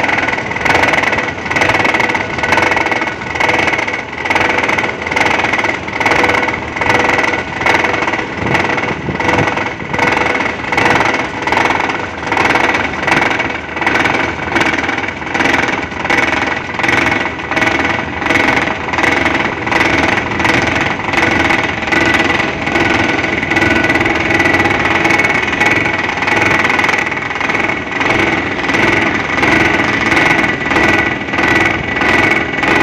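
An excavator-mounted vibratory pile hammer driving a steel sheet pile, a steady mechanical whine with the excavator's engine under it, swelling and dipping in loudness about once a second.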